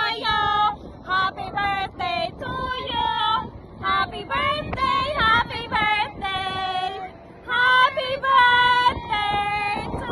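A high-pitched voice singing in short, repeated notes, with brief pauses between phrases and no instruments.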